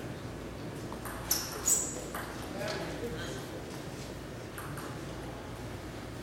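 Table tennis hall between points: two sharp, high clicks about a second and a half in, the second with a brief ring, over a low murmur of spectators' voices.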